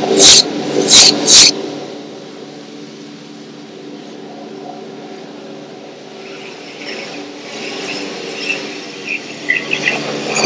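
Three sharp knocks in the first second and a half, then a steady low drone of several held tones, with faint scattered high sounds near the end.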